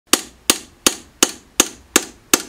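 A hammer tapping a hand-held chisel to raise the teeth of a handmade Japanese grater (oroshigane), one tooth per stroke. There are six evenly spaced, sharp metallic taps, nearly three a second, each with a brief ring.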